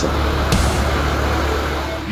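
Nissan Frontier diesel pickup driving into a shallow stream crossing: a steady rushing noise of engine and water, with a sharp splash about half a second in.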